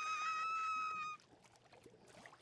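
A cartoon pony's scream: a thin, high-pitched voice held on one steady note, cutting off suddenly about a second in.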